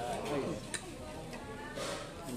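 Diners' voices in the background with two sharp clicks of cutlery on plates, about a second apart.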